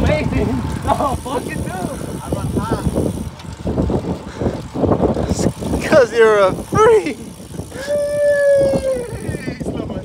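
Wind rumbling on the microphone while riding along with a group of road cyclists, with wordless calls from a rider: a wavering call about six seconds in and a long held call near the end.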